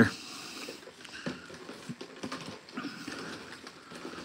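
Faint rustling and crinkling of a hand stirring folded paper tickets in a plastic bag, with small irregular crackles throughout.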